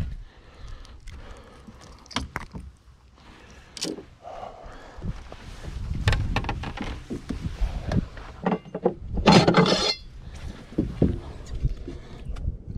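Scattered knocks, clicks and rustles of a largemouth bass being handled on a bass boat's carpeted deck, with a louder, denser burst of handling noise about nine seconds in.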